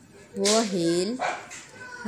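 A person's voice speaking slowly, one drawn-out syllable with a bending pitch, followed by a short hiss.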